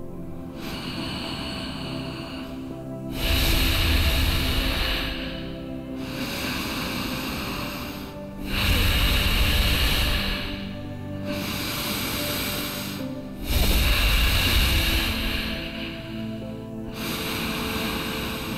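A person taking slow, deep breaths close to the microphone, in and out, over soft, steady meditation music. There are about three full breaths. Each quieter, hissy in-breath is followed by a louder out-breath that rumbles on the microphone, a cycle of roughly five seconds.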